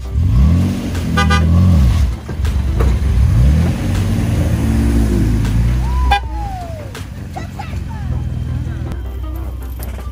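Pickup truck engine revving hard under load, its pitch rising and falling twice, while one truck pulls another out of deep sand on a tow chain. A short horn toot sounds about a second in.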